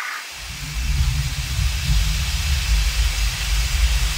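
Animated-intro sound effect: a deep rumble with a hiss over it, starting about a third of a second in and running steadily as the light streaks sweep across the screen.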